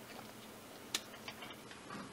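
A sharp plastic click about a second in as the power switch on the underside of a battery-powered Benelic No-Face coin bank is switched off, followed by a few faint ticks and a light knock of the plastic body being handled and set down.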